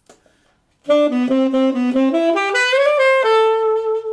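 Tenor saxophone playing a solo jazz lick, starting about a second in: a run of quick notes that climbs in pitch and ends on a long held note.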